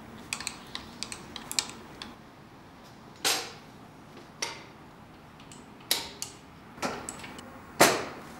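Clicks and knocks from a lithographic press being worked by hand: a run of light ticks in the first two seconds, then several sharper clunks a second or so apart, the loudest near the end.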